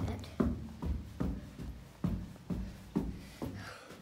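Footsteps climbing carpeted stairs: dull, regular thuds a little over two steps a second.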